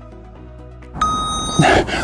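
Quiet electronic background music, then about a second in a loud interval-timer beep, one held tone of about half a second, marking the end of a 20-second Tabata work interval.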